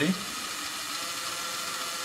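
Small yellow plastic-geared DC motors turning the wheels slowly under low-duty PWM, making a steady whirring with a thin whine.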